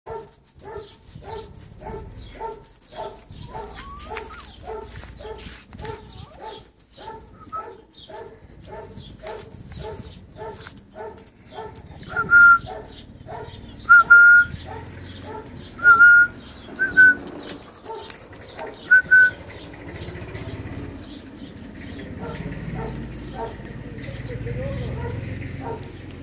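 West Highland White Terrier puppies yapping, a quick steady train of small barks about two to three a second through the first half. About halfway, five short, loud, high-pitched squeals come as they play.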